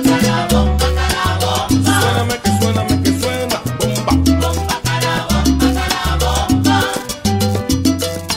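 Salsa recording in an instrumental passage: a bass line moving under dense hand percussion and pitched band instruments, with no singing.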